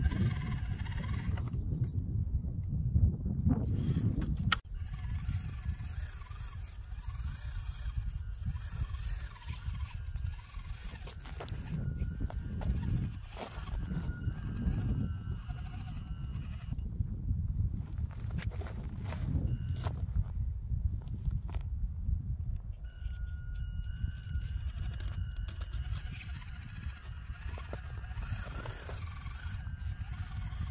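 Wind rumbling on the microphone, with the thin wavering whine of an Axial SCX24 micro crawler's small electric motor and gears, rising and falling as it crawls.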